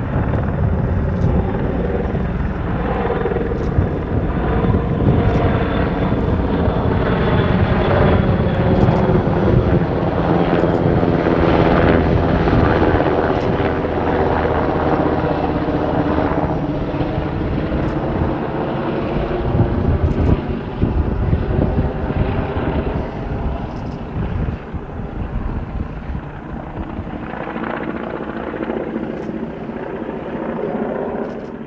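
NH90 military helicopter flying past, its rotors and twin turboshaft engines making a steady whine whose tones bend in pitch as it passes. It is loudest through the middle and fades near the end.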